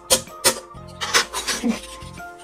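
Background music, with a few short, sharp scrapes or knocks of a steel knife blade worked against a wooden sculpting spatula as it is trimmed.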